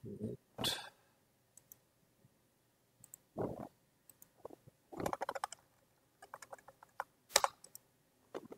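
Typing on a computer keyboard: irregular keystrokes, coming in short runs, with a fast burst about five seconds in and another near the end.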